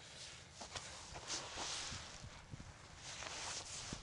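Faint scuffing and rustling of someone moving about on ground covered in wood chips, with a few light ticks.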